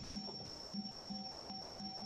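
Faint background noise of a video-call recording with a steady high-pitched whine, a fainter intermittent mid-pitched tone and scattered soft low blips.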